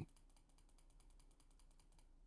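Near silence with faint, rapid, even ticking, about ten ticks a second.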